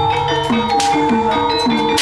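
Javanese gamelan music for an ebeg horse trance dance: steady metallophone-like melody tones over hand-drum strokes that drop in pitch, with a sharp crashing strike about a second in and another at the end.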